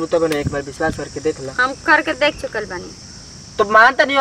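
Speech, a man talking with a short pause near the end, over a steady high-pitched chirring of insects.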